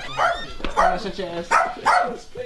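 Dog barking, three barks spaced under a second apart.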